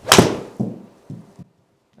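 A pitching wedge strikes a golf ball off a hitting mat with one sharp crack, struck a little off the toe, followed by a couple of softer thumps.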